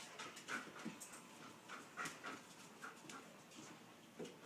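A dog panting quietly, a run of short, quick breaths two or three a second.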